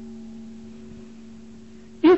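A bell-like ringing tone with several steady pitches at once, slowly fading away.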